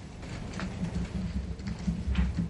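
Study-library reading-room ambience: a steady low hum with a few light scattered clicks and taps from people working at desks.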